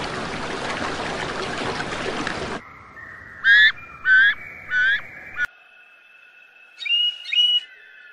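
Water hissing and sloshing for the first two and a half seconds. Then a banded kingfisher gives three loud whistled calls about half a second apart, each gliding in pitch, with a fainter fourth. In the last part a tui sings steady high tones with two short sharp notes near the end.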